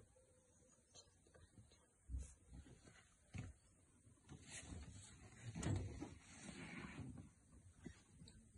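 Mostly quiet background with a few soft knocks, about two and three and a half seconds in, and a louder rustling bump near six seconds: handling noise from the phone being held and moved.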